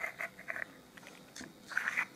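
Light taps and scrapes of small resin terrain pieces being handled and slid on a cutting mat, with a brief louder rustle near the end.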